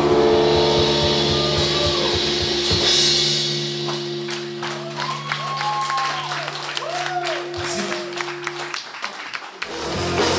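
Live rock band's last chord held and ringing from the amplified guitars and bass, dying away and stopping about nine seconds in, while the audience claps and cheers; the band starts up again right at the end.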